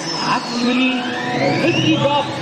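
Large stadium crowd: many voices mixed together, with a long rising tone that climbs steadily through the second half.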